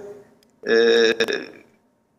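A man's drawn-out hesitation sound, the Turkish filler "e" (like "eh"), held at one steady pitch for nearly a second about half a second in, with short silent pauses around it.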